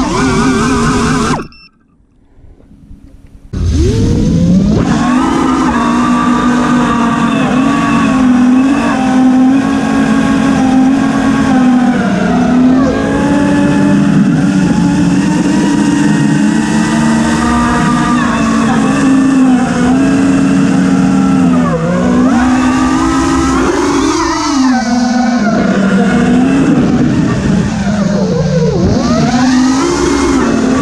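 Home-built FPV quadcopter's motors and propellers whining, the pitch rising and falling with the throttle. About a second and a half in the motors cut out for about two seconds, then spin back up and run on.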